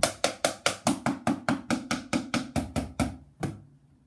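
Drumsticks striking books used as a makeshift practice drum kit, an even run of about five strokes a second that stops about three and a half seconds in.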